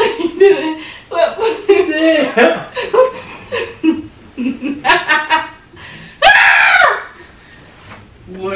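Playful laughing and squealing voices with no clear words, then one loud scream lasting under a second about six seconds in.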